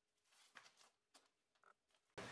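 Near silence, with a few faint soft rustles and ticks from hands handling a nylon chest-rig placard.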